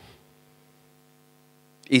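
Steady electrical mains hum: a set of low, unchanging tones. A man's voice starts again just before the end.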